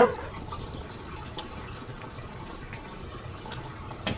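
Engine coolant trickling steadily from the opened radiator drain into a catch container, with a few faint clicks from hands working a hose clamp.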